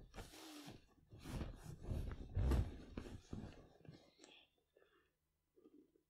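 Soft, irregular rustling and breathy noises from a person close to the microphone, dying away about four seconds in.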